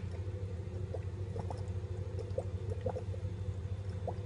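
Dry ice bubbling in vodka in the lower bulb of a glass siphon: a continuous gurgle with small irregular pops, as the gas from the sublimating ice pushes the vodka up into the upper chamber for a quick cold infusion. A steady low hum runs underneath.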